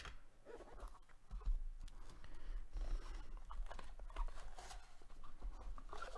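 Cardboard trading-card box and plastic packaging being handled: irregular rustling with scattered light clicks as a graded card in a hard plastic slab is taken out.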